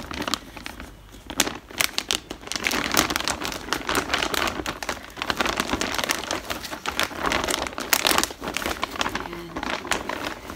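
Yellow plastic courier mailer bag crinkling and rustling in quick irregular crackles as it is handled and pulled open, easing off briefly about a second in.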